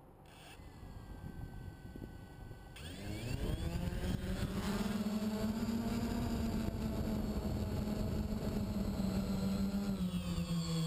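DJI Phantom quadcopter's electric motors and propellers spinning up about three seconds in, rising in pitch, then a loud steady buzzing hum as the drone lifts off and climbs. Heard up close from the camera mounted on the drone.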